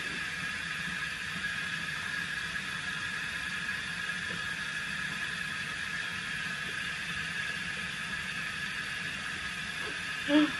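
Hot water running steadily from a bathroom tap, an even rushing hiss that does not change.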